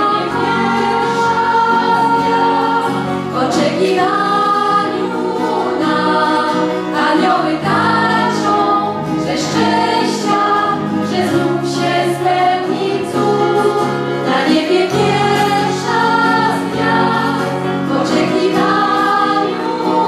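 A women's vocal group singing a Polish Christmas carol (kolęda) in several-part harmony, with acoustic guitar accompaniment.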